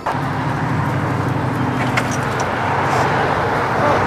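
Street traffic: a car engine running steadily close by over the hiss of tyres on the road. The engine hum fades about halfway through while the road noise carries on.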